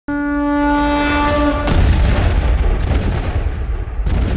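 A single held horn note, then about one and a half seconds in a sudden deep boom like a cannon shot that rumbles on, opening a song.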